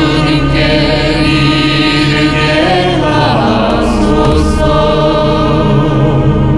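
Voices chanting a Korean Catholic yeondo litany for the dead, steady and unbroken. They are accompanied by an ensemble of Korean traditional instruments with keyboard and guitar.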